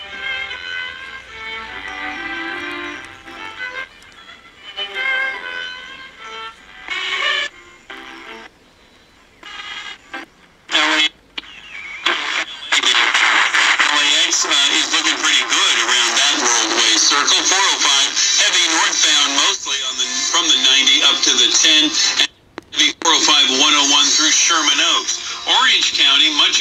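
Vega RP-240 portable radio's speaker playing broadcast stations as its dial is tuned: snatches of speech and music come and go with short gaps. From about halfway one station holds, playing music, and it drops out for a moment near the end.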